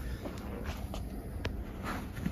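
Faint handling sounds of a neck massage: hands rubbing on skin and the towel beneath, with a few soft clicks, the sharpest about one and a half seconds in.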